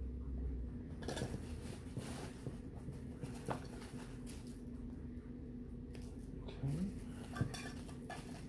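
Glass candle jars (candles poured into rocks glasses) clinking and knocking against each other as they are handled, a few separate clinks over several seconds.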